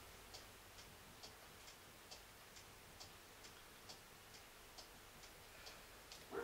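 Near silence with faint, regular ticking, about two ticks a second.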